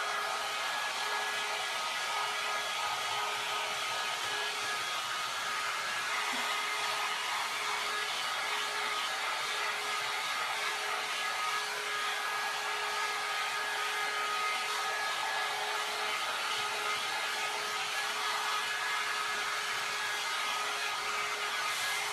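John Frieda Salon Style 1.5-inch hot air brush running without a break: a constant blowing hiss with a faint steady whine through it.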